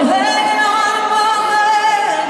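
A woman's live singing voice, amplified through an arena PA, holding one long high note for about two seconds with a short slide up into it, against a music backing.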